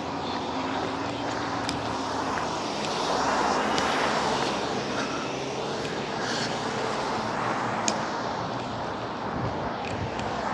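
Road traffic on a busy street: the steady noise of cars driving past, swelling about three seconds in as a vehicle goes by and easing off again.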